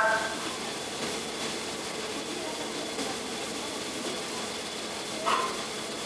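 Steady hiss and running noise of a slow-moving studio tour tram, with a voice starting briefly near the end.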